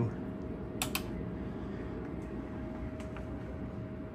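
Two sharp clicks close together about a second in, with a few fainter ticks later: the left/right switch on the Tektronix Type 575 curve tracer's transistor test adapter being flicked between the two test sockets. A steady faint tone and room noise carry on underneath.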